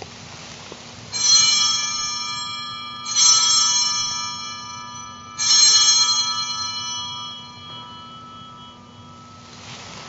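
Altar bells rung three times at the elevation of the chalice during the consecration. Each ring is a bright cluster of high tones that fades slowly, and the last rings longest.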